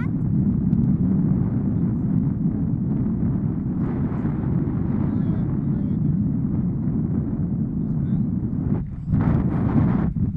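Airflow buffeting an action camera's microphone in paraglider flight: a steady low rumble of wind noise that dips briefly near the end.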